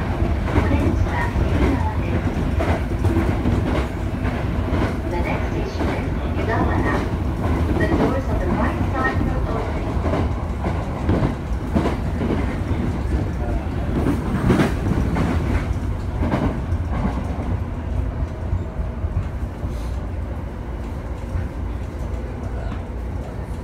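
Inside a commuter electric train under way: a steady low rumble of wheels on rail, with scattered irregular clicks from the rail joints.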